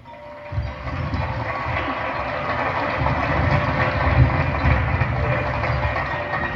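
High school marching band playing a loud held passage over a low, rumbling drum roll, after a brief drop in sound at the start.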